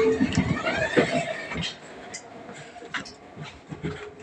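Inside a passenger train carriage: background voices with scattered clicks and rattles, and a short rising whine in the first second or so.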